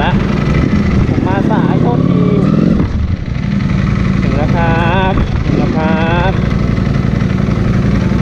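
Ducati V4 superbike engine idling steadily, with voices talking over it.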